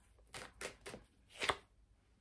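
A deck of tarot cards being shuffled by hand: four short, crisp snaps of the cards in the first second and a half, the last the loudest.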